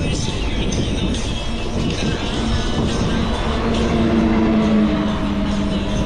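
Wind buffeting the camera microphone of a moving bicycle, with music underneath. A low steady hum comes in about two seconds in, is strongest near five seconds and fades near the end.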